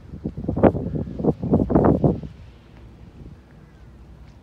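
Wind gusting against a phone microphone in loud, irregular rumbles for about two seconds, then dropping to a faint steady background.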